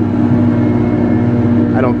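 A homemade houseboat's motor running steadily while underway, a constant drone with a few fixed tones.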